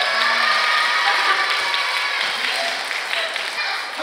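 Audience of children and adults applauding, with many high children's voices calling out over the clapping.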